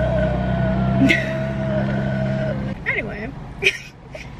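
A woman sighs and laughs inside a car, over a steady low hum that stops about two and a half seconds in.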